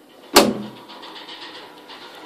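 A single sharp knock about a third of a second in, with a short ring-out, followed by softer rustling.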